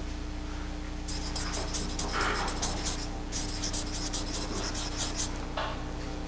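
Felt-tip marker writing on paper: a quick run of short scratchy strokes for about four seconds, starting about a second in. A steady low electrical hum lies under it.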